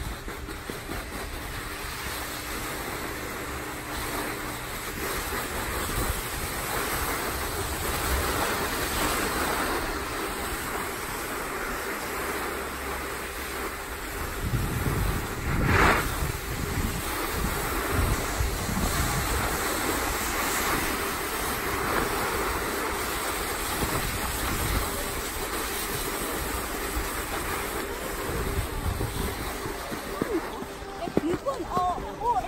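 Snowboard sliding over packed snow: a continuous scraping hiss and rumble of the board's base and edges, with wind buffeting the microphone. About halfway through the scrape swells louder for a moment, as the edge digs in harder.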